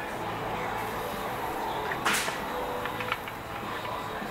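Brief hiss about two seconds in, then a few faint ticks: pressurised air escaping through the leaking input shaft seal of an Alpha Gen II lower unit during a pressure check, spurting through the oil around the drive shaft.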